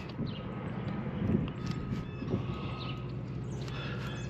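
Faint light clicks of a multimeter test probe moving from pin hole to pin hole in a cable connector, over a steady low background hum. A faint thin tone holds for about two seconds in the middle.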